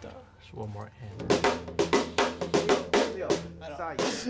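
A band playing: a drum kit with snare and bass-drum hits over an electric guitar, the drums coming in strongly about a second in.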